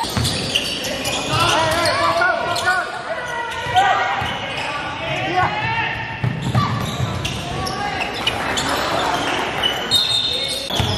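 Basketball game sounds in a gym hall: a basketball repeatedly bouncing on a hardwood court, many short high squeaks from sneakers on the floor, and indistinct shouts from players and the bench, all echoing in the hall.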